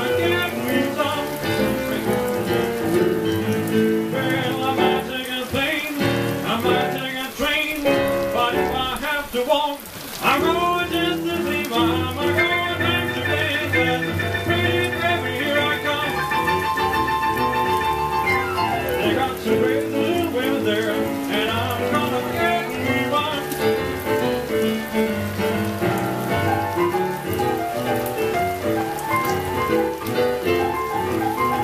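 Two electric pianos playing an instrumental boogie-woogie blues passage of fast rolling notes, with a brief break about ten seconds in and a long high trill a few seconds later.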